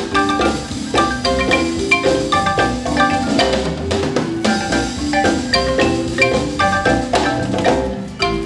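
Guatemalan marimba music played over a parade float's loudspeaker: many quick struck notes in a lively melody over a steady low bass, without pause.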